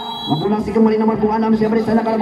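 A man's voice calling out in long, drawn-out tones. A brief high whistle-like tone sounds at the very start.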